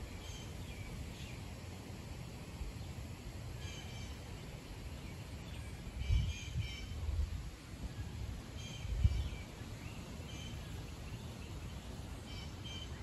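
Outdoor ambience: short bird calls repeating every couple of seconds over a low rumble, with two louder low thumps about six and nine seconds in.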